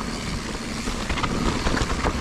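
Enduro mountain bike rolling fast down a packed dirt trail: a steady rushing rumble of the tyres on dirt and air over the chest-mounted microphone, with a few light knocks and rattles from the bike.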